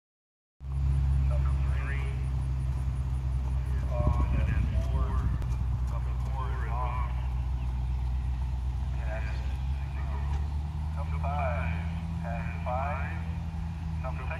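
Steady low hum of an idling engine, with voices talking in the background.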